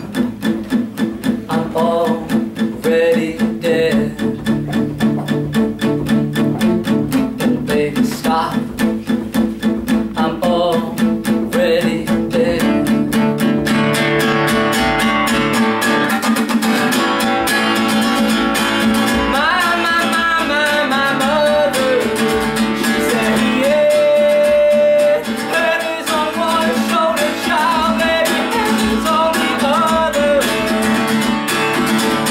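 Acoustic guitar played in a steady rhythm of about two strokes a second, with a man singing over it. The voice comes through more strongly in the second half, with one long held note.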